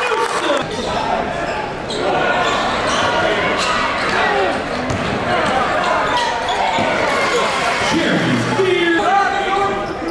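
Basketball being dribbled on a hardwood gym floor during live play, amid shouts and chatter from players and crowd in a large gym.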